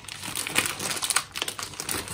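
Plastic mailer bag crinkling and rustling as it is pulled open by hand, with many short, irregular crackles.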